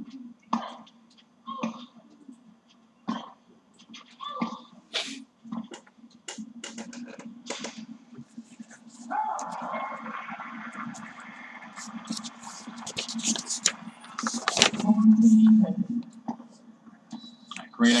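A women's tennis rally heard through a television speaker in a small room: sharp racket strikes on the ball about once a second with short player grunts, then several seconds of steady noise and a few close knocks, over a steady low hum.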